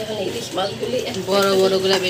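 A woman's voice speaking in a drawn-out, sing-song way, holding one long vowel near the end.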